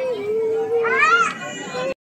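Children's voices outdoors, with a long held vocal sound and a short high-pitched child's call about a second in; the audio cuts off abruptly just before the end.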